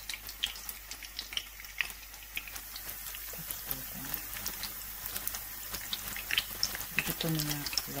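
Fish sticks frying in hot oil in a pan: a steady sizzle with scattered crackles and pops.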